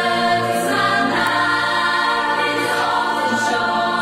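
Choir singing held chords, a sung radio-station jingle.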